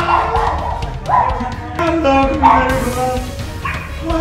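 A voice crying out again and again, about five loud pitched cries that each start harshly and slide down in pitch, over background music.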